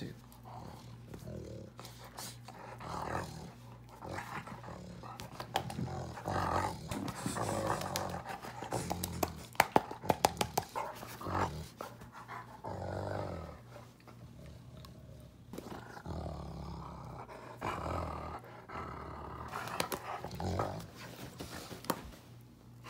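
A dog growling in repeated bursts of a second or two as it is petted, with a run of sharp clicks about ten seconds in.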